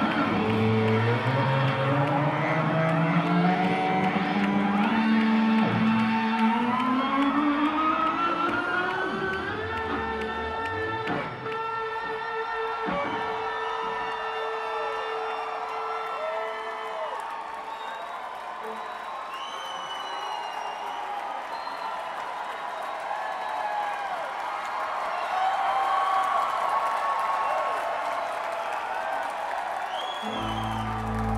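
A rock band playing live in a hall, taped from the audience, with guitar. A pitched line slides slowly upward over the first ten seconds or so and then holds, and the music thins to a quieter stretch after the middle.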